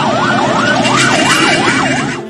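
Ambulance siren in a fast yelp, its pitch sweeping up and down about four times a second, over a steady haze of background noise. It fades out at the very end.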